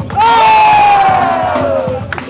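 One loud, long shout from a single voice, falling steadily in pitch for nearly two seconds, over the DJ's music playing for the breakdance battle.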